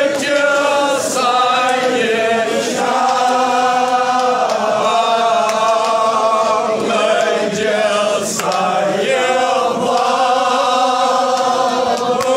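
Crowd of voices chanting together in a loud, continuous melodic chant, the phrases moving in pitch every second or so.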